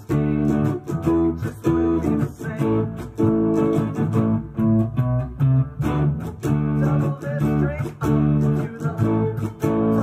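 Ibanez electric guitar strummed through an amp, playing driving rhythmic chords with short breaks between phrases. A few sung words come in near the end.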